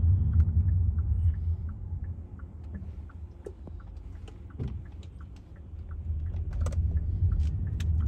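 A car's turn-signal indicator ticking steadily, heard inside the cabin over a low road rumble. The rumble fades through the middle as the car slows and rises again as it pulls away.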